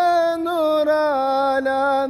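A solo voice singing a Turkish ilahi (devotional hymn), holding one long melismatic note that steps down in pitch about halfway through.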